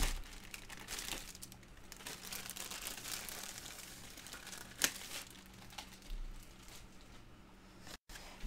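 Packaging rustling and crinkling as a diamond-painting kit is unpacked by hand, with a sharp click about five seconds in.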